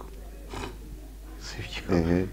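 A lull in a men's conversation: soft, low voices with a steady low hum underneath, and a man's voice picking up again near the end.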